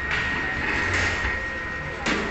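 Steady machinery noise with a constant thin high whine and a low hum under it.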